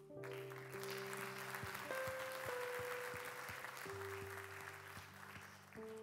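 Congregation applauding, which starts straight away and dies down near the end, over soft keyboard chords held and changing underneath.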